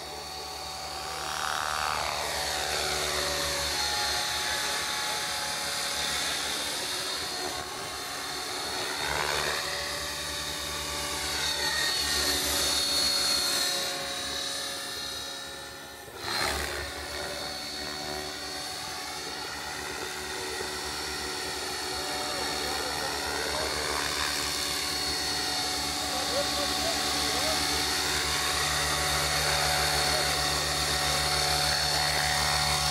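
Align T-Rex 600E electric RC helicopter in flight: the steady high whine of its motor and gears over the whoosh of the rotor blades. Its tone sweeps and shifts as it moves around the sky, and it dips briefly about halfway through before settling into a low hover near the end.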